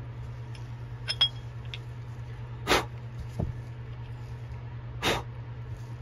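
Two short puffs of breath about two seconds apart, blowing excess mica powder off freshly powdered soft-plastic swimbaits, over a steady low hum.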